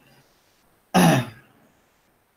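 A man clearing his throat once, a short burst about a second in.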